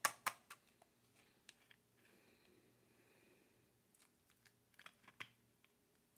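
Near silence: room tone with a few faint clicks and taps in the first half-second and again about five seconds in.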